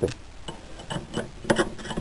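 A few light, separate metal clicks and taps from parts being handled at a steel bench vise.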